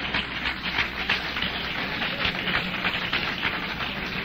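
Congregation applauding: a dense, steady patter of many hands clapping, over a steady low hum.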